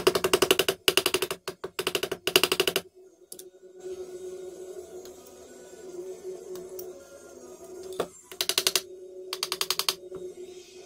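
A small hammer tapping fret wire into the slots of a guitar fingerboard. The light, rapid strikes come about ten a second, in four short runs over the first three seconds and two more near the end.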